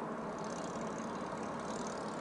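A car driving at steady speed on the road: constant engine and tyre noise with a steady low hum, heard from inside the car.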